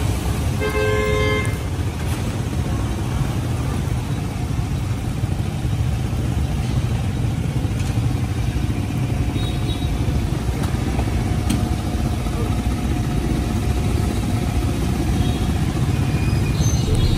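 Street traffic: a steady low rumble of engines, with a vehicle horn sounding briefly about a second in.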